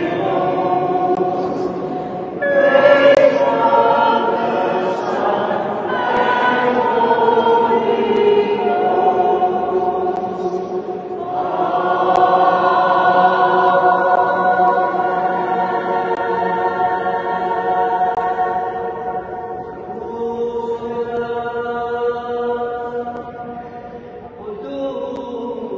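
A small group of men and women singing together a cappella in a stone church, in long held notes with short breaks between phrases.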